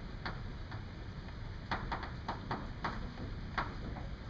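Chalk writing on a blackboard: a string of irregular sharp taps and short scrapes as the chalk strikes and drags across the slate.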